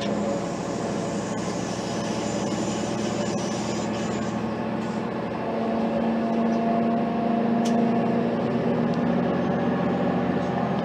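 A Class 185 diesel multiple unit on the move, heard from inside the carriage: the underfloor Cummins diesel engine drones steadily over the rumble of the wheels on the rail. The engine note grows louder about halfway through.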